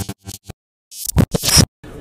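Glitchy, scratch-like intro sound effect: a few quick stutters, then louder sweeping scratches about a second in that cut off abruptly.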